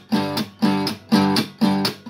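Acoustic guitar strummed in short chords, about two a second, each chord dying away quickly before the next.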